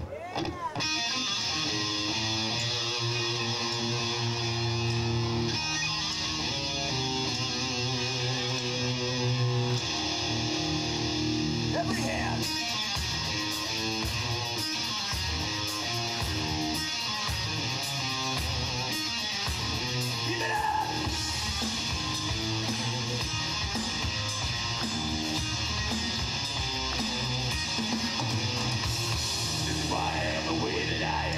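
Heavy metal band playing live: a distorted electric guitar riff with drums and bass kicks in about a second in and runs on, with a singer's vocals over it.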